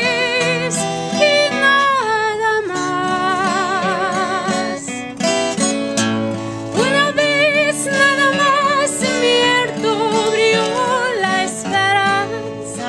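A woman singing a Spanish-language ballad with a wide vibrato on long held notes, accompanying herself on a strummed acoustic guitar.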